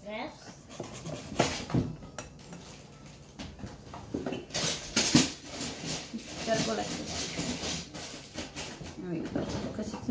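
Zucchini being grated on a hand-held metal grater over a glass bowl, in irregular rasping strokes with occasional clicks.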